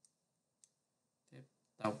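Two short, light computer mouse clicks about half a second apart, with near silence around them.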